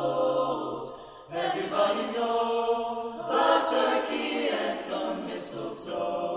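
Mixed choir singing in close harmony, a cappella, in a jazz arrangement, with a brief break between phrases about a second in.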